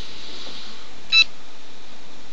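A single short electronic telephone beep about a second in, over steady hiss.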